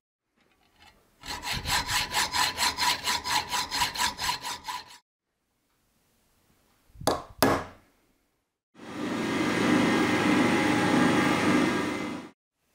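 A hacksaw cutting a brass plate with quick, even strokes, the metal ringing, for about four seconds. Then two sharp taps on a centre punch, and then a drill press running and drilling into the brass.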